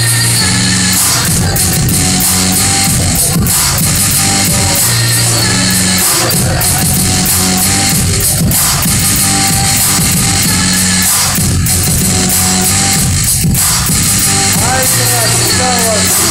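Electronic music played live on a light-up MIDI pad controller and sounding through a homemade wooden speaker box. It has a steady beat and a bass line of held notes.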